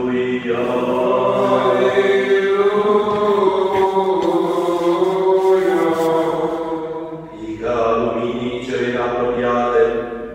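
Orthodox Byzantine-style chant of an akathist: a drawn-out, melismatic 'Aleluia' refrain sung in long held notes, with a short break about seven and a half seconds in.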